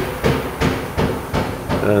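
Footsteps on a hard floor: a run of short knocks, about three a second, as someone walks in through a doorway.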